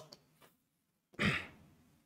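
A man's short audible exhale, like a sigh, about a second in, in an otherwise quiet pause.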